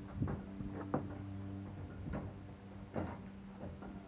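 A pony's hooves knocking on a horse-trailer ramp, four separate knocks over a few seconds as it shifts its weight on the ramp, over a steady low hum.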